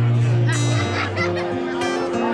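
Solo steel-string acoustic guitar playing the song's instrumental outro, with a low bass note ringing under picked higher notes.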